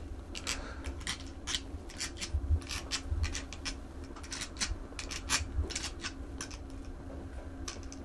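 Metal bus bars being placed over the threaded terminal studs of LiFePO4 battery cells: irregular light clicks and taps of metal on metal.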